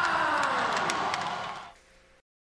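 Arena sound with several tones gliding slowly down in pitch together over a noisy bed, fading out about three-quarters of the way through.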